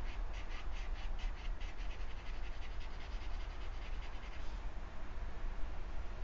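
Quick, rhythmic strokes of a drawing pencil scratching across sketchbook paper, about five a second, fading out after about four and a half seconds as the shading stops.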